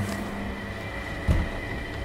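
Steady mechanical background hum with a thin high whine running through it, and a single short low thump a little past the middle.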